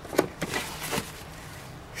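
The rotary dial of a Hunter Pro-C sprinkler controller clicking as it is turned to switch the watering system on: one sharp click a moment in, then a couple of fainter ones.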